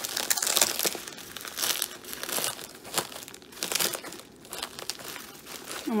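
Plastic bubble wrap crinkling and rustling in irregular bursts, with sharp crackles, as hands press on it and pull at it to peel a wrapped package open.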